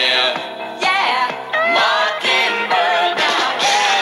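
Singers performing a pop song over band accompaniment, their voices rising and falling in long, wavering sung lines.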